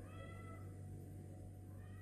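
Two faint short pitched cries, like an animal's call: one right at the start lasting about half a second and a shorter one near the end, over a steady low hum.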